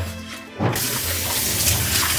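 Kitchen sink tap turned on, water rushing steadily into the sink from about a second in.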